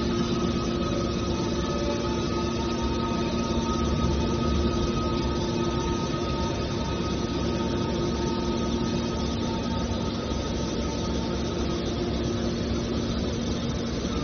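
Hydraulic scrap metal baler running: a steady mechanical drone with a constant hum from its hydraulic pump and motor.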